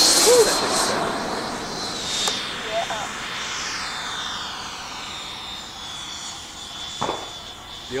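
The 120 mm electric ducted fan of an HSD Jets T-33 model jet, under takeoff power as it lifts off and climbs away. It makes a high whine over a rushing hiss that slowly falls in pitch and fades as the jet pulls away.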